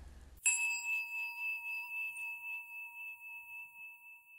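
A meditation bell struck once, about half a second in, ringing on with a slow, even pulsing as it fades.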